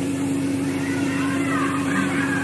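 Steady electrical hum over a constant hiss of recording noise, with a faint voice in the background in the second half.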